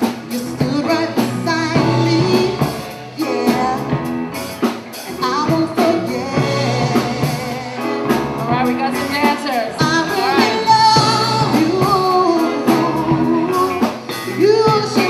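Live soul band playing, with lead singing over keyboard, drums and guitar.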